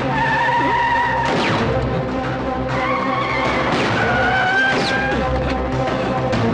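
Dramatic film background score: long held high notes that step to a new pitch every second or so, over a steady low rumble, with a few sweeping sound effects.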